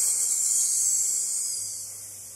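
A woman's long, steady 'ssss' hiss, voicing the letter S as a snake's hiss. It gets gradually quieter toward the end.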